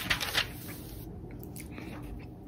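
A brief breathy mouth noise at the start, then a quiet, steady low hum of room tone.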